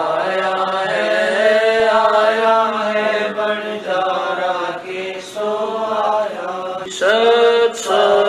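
A voice chanting a devotional hymn, drawing out long held and slowly wavering notes over a steady low tone.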